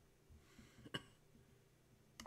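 Near silence, with a soft breath and then a single sharp computer mouse click about a second in.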